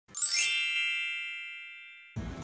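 Intro logo sound effect: a quick rising swoosh into a bright, shimmering chime that rings on and fades away over about two seconds.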